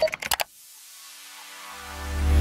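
Background music: a few short sharp hits, then a swell that rises through the second half into a deep bass note near the end.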